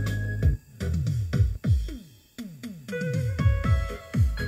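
Sansui SG2-15 two-way trolley karaoke speaker, with a 40 cm woofer and a tweeter, playing a strong electronic dance track. Deep drum hits drop in pitch in quick succession, the music breaks off briefly about two seconds in, then the hits return with synth notes over them.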